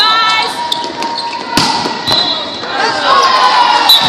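A volleyball struck once with a sharp smack about a second and a half in, amid players and spectators shouting.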